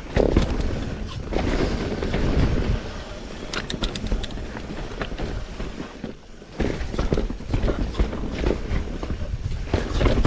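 Mountain bike descending a rooty dirt trail: tyres rumbling over roots and rocks, with repeated clattering from the bike over the bumps and wind rumble on the microphone. It eases briefly about six seconds in, then picks up again.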